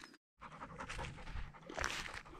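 Faint, irregular panting breaths close to the microphone, beginning after a brief dropout at the start.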